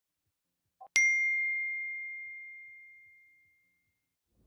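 A faint click, then a single bright bell-like ding about a second in that rings on one clear note and fades away over nearly three seconds, timed with a phone's lock icon opening.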